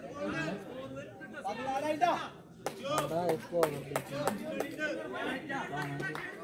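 Men's voices calling and chattering on the field, with several sharp claps about halfway through.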